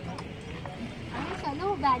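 Low outdoor background noise with a few faint clicks, then a young woman starts talking loudly just past halfway.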